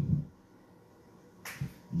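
The end of a man's spoken word, then a quiet pause broken by one sharp click or snap about a second and a half in.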